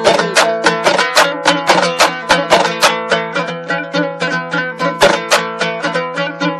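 Instrumental music: a plucked string instrument playing quick, evenly spaced notes over a steady drone.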